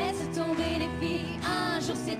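Female voices singing a French pop song together into microphones, with a live band accompanying. The melody carries a light vibrato over steady held chords.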